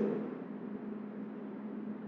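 A pause between spoken sentences: quiet room tone with a steady low hum, a voice tailing off in the first half second.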